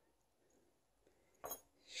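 Near silence of quiet handwork, broken by one short, sharp click about one and a half seconds in.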